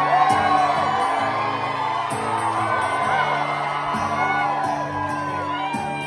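A live band playing an instrumental passage of a country-rock song, with acoustic guitar and steady held keyboard chords. Audience members whoop over the music.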